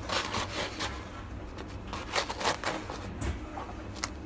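A knife sawing lengthwise through the crisp baked crust of a Turkish pide on a wooden board. There are two runs of rasping strokes, one at the start and another about two seconds in.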